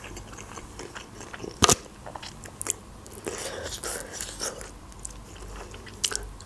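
Close-up eating sounds: biting and chewing on boiled chicken leg meat eaten off the bone, with small wet clicks and crackles and one sharp click about a second and a half in.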